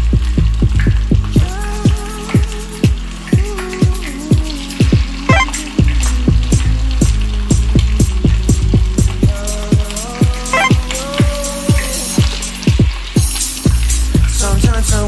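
Pork rib pieces sizzling as they fry in shallow oil in a pan, heard under background music with a steady beat and a melody line.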